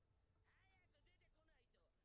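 Very faint, high-pitched dialogue from an anime episode, barely above near silence.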